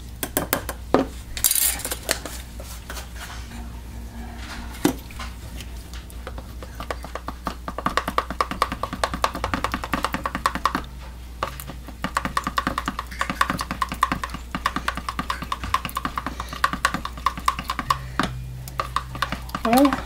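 Plastic spoon hand-stirring blue mica colorant into raw soap batter in a plastic measuring cup. It makes rapid ticking and scraping against the cup walls, dense from about six seconds in, with a few separate knocks before that.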